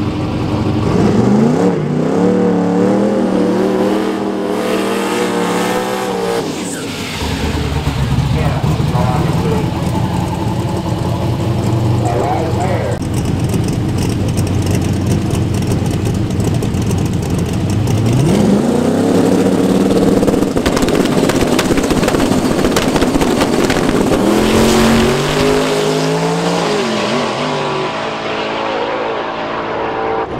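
Drag-racing street cars' engines revving at the start line, then launching hard down the strip; each rise in engine pitch steps up and breaks off as the cars shift gears.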